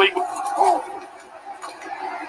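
Television football broadcast commentary: a commentator's voice for the first second or so, then a quieter lull of faint background noise.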